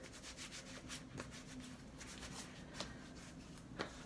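A face wipe rubbed over the skin in quick, repeated scratchy strokes, several a second, wiping off excess foundation; faint.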